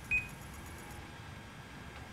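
A single short high beep from a Sony Vaio laptop, about a tenth of a second in, followed by quiet room tone.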